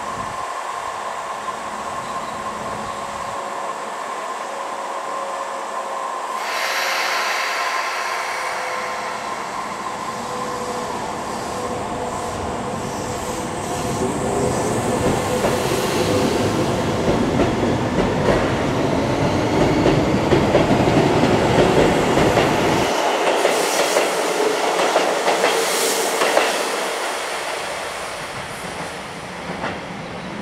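Keisei 3500 series electric commuter train standing with a steady electrical hum, then pulling away from the platform. The sound of its motors and wheels builds as it gathers speed, with wheel clatter over the rail joints, and eases off near the end.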